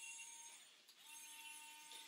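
Near silence: room tone with a faint steady high whine that drops out for a moment about half a second in.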